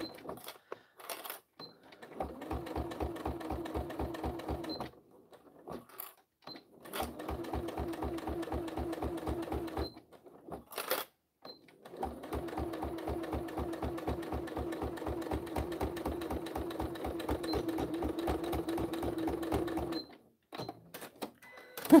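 Domestic sewing machine stitching binding onto a quilted fabric pouch. It runs in three bursts of a few seconds each, the last and longest about eight seconds, with short pauses and a few brief clicks between them.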